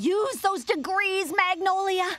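A woman's voice talking, several syllables drawn out at a level pitch.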